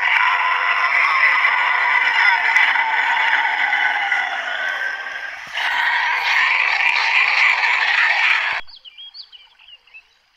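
A loud, dense chorus of calling frogs that cuts off abruptly about eight and a half seconds in, leaving only faint, scattered bird chirps.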